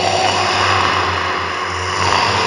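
Horror-intro sound design: a loud, steady rushing noise over a low drone, with a few faint held tones.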